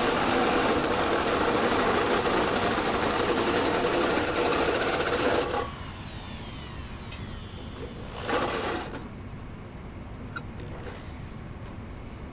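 Power drill driving a three-inch hole saw through a steel fender, cutting steadily until it stops about five and a half seconds in. A brief burst of noise follows a few seconds later.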